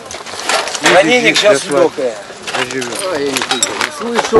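Men's voices talking, with a few short sharp clicks among them.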